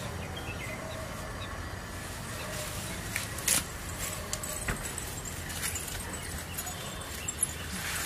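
Outdoor background noise: a steady low hum with a few short, sharp clicks scattered through it, the loudest about three and a half seconds in.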